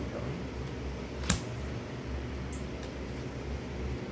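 Steady whir of an electric fan in a small room, with one sharp tap about a second in as a tarot card is laid on the wooden table, and a couple of fainter ticks later.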